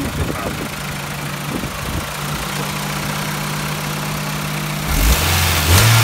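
Honda Integra Type R DC2's 1.8-litre B18C DOHC VTEC inline-four, all stock, idling steadily, then blipped by hand about five seconds in so the revs jump up and fall back. The idle is settled, and the revs climb smoothly with no hesitation, the sign of a healthy engine.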